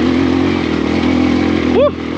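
Kawasaki KLX140RF dirt bike's single-cylinder four-stroke engine pulling steadily under load in second gear while climbing a rocky trail.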